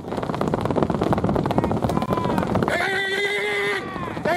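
Men at a pigeon race calling the birds in with rapid rolled-tongue 'rrrr' calls, then one long held shouted call about three seconds in.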